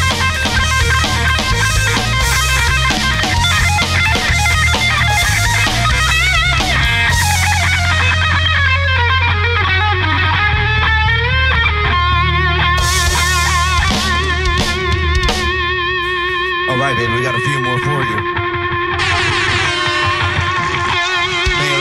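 Live rock band playing an instrumental passage: an electric guitar lead with wavering, held notes over bass and drums.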